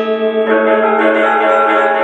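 Balinese gong kebyar gamelan playing: bronze metallophones and gongs ringing in many held, overlapping tones, with a fresh set of strokes coming in about half a second in.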